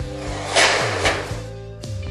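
Background guitar music, with a short burst of a cordless screw gun driving a hex head screw into a steel wall frame's top plate about half a second in.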